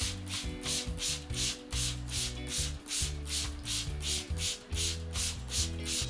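Hand trigger spray bottle pumped rapidly, squirting water over the soil of a small pot in short hissing bursts about three times a second. Background dub music with a bass line plays underneath.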